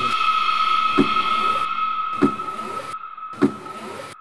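A sustained high, eerie tone of suspense background music, with three dull thumps about a second and a quarter apart.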